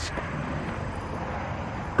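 Steady outdoor background noise: an even, unbroken rumble and hiss with no distinct events.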